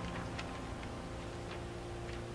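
The song's final piano chord dying away, its low notes held and fading, with a few faint, irregular soft clicks over it.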